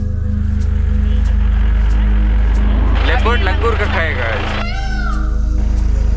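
Background music with a steady low drone. About three seconds in, a short burst of wavering, pitch-bending calls rises over it, then one gliding call.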